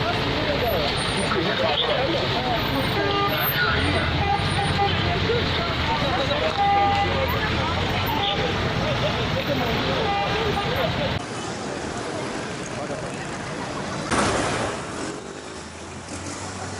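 Busy street noise: several people talking over each other, car engines and a few short car-horn toots. After about eleven seconds it drops to quieter traffic, with a louder passing vehicle near the end.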